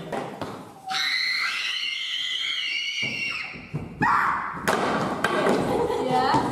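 A shrill, wavering scream held for about two seconds, then a few sharp thumps and a burst of noisy clatter.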